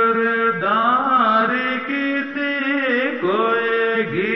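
A voice singing a Pahari folk song, drawing out long held notes that bend and waver in pitch.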